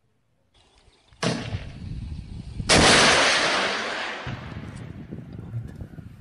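Two loud explosions about a second and a half apart. The second is the louder and fades out in a long rumble.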